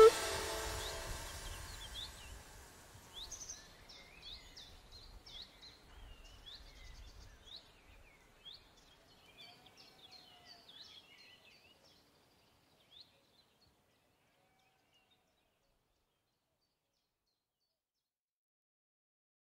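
Music cuts off, leaving a low fading tail under birdsong: many short chirps that thin out and fade away over about ten seconds.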